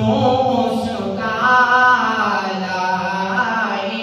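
A solo man's voice singing an unaccompanied Urdu devotional kalaam (naat style) in long held, wavering melodic notes.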